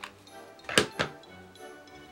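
Hot glue gun set down on the tabletop: two sharp knocks about a quarter second apart, over soft background music.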